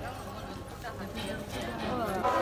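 Street sounds with passers-by talking, their voices faint and broken, over a steady low background hum, and a few short knocks about a second in.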